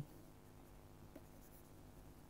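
Near silence: faint stylus strokes on a pen tablet as handwriting is written, with one light tap about a second in, over a low room hum.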